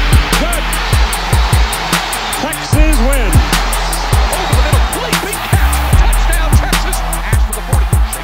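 Background music with a fast steady beat of high ticks, under low tones that swoop up and down.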